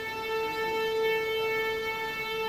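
String orchestra of violins, violas, cellos and double basses holding one long sustained note, growing slightly louder about half a second in.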